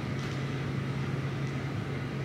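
Room tone: a steady low hum with faint even background noise.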